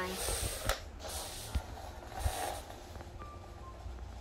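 Handling noises of a homemade copper-coil and battery train being set up on a wooden floor: soft rustling with a sharp click under a second in, and a few light knocks and brushes around the middle.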